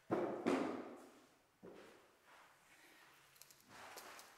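Children hopping between gym step boxes, balance boards and foam pads, with two soft landings close together near the start and fainter shuffling steps after.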